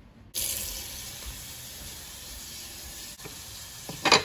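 Water running steadily from a tap, starting abruptly just after the start.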